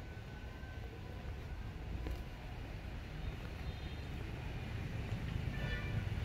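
Steady low rumble of outdoor background noise, with a few faint, brief high tones over it.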